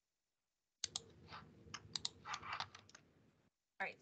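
Typing on a computer keyboard: a faint, quick run of keystrokes starting about a second in and stopping about half a second before the end.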